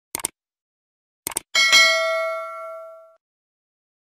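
End-card subscribe sound effect: two quick pairs of mouse clicks, then a bright notification-bell ding that rings out and fades over about a second and a half.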